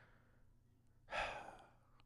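A man's breathy sigh about a second in: a short exhale that fades out, with near silence around it.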